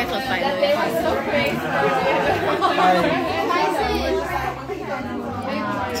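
Several people talking over one another in a busy room, with a woman's voice close to the microphone at the start.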